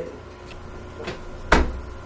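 A single sharp knock with a low thud about one and a half seconds in, after a short pause in the talk, over a low steady hum.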